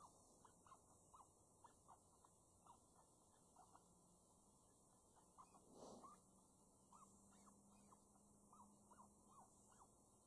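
Faint, short high squeaks repeated irregularly, about one or two a second, like a small rodent's distress squeaks played from an electronic predator caller.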